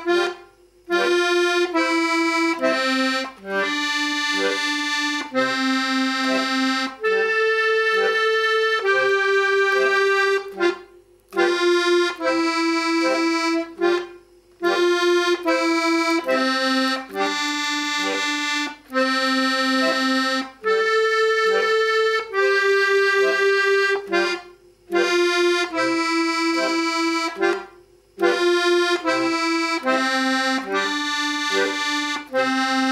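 Piano accordion playing a simple dance tune in F major at a slow practice tempo: held melody notes on the treble keys, about one a second, over bass and chord buttons, with short silent breaks between phrases.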